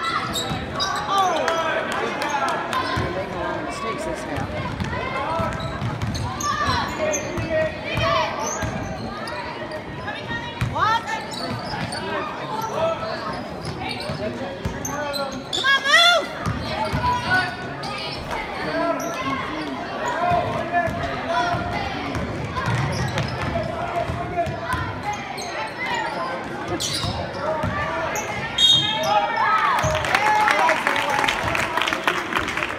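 Live basketball play on a hardwood gym court: the ball bouncing, sneakers squeaking, and spectators and players calling out in an echoing hall.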